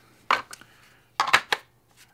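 Hard plastic clicks and knocks from a Kydex pistol holster being handled and a pistol fitted into it: a sharp click, a smaller one, then a quick cluster of three clicks about a second in.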